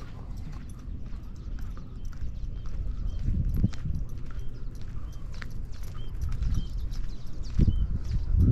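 Footsteps on asphalt at a steady walking pace, with occasional low rumbles about three and a half seconds in and again near the end.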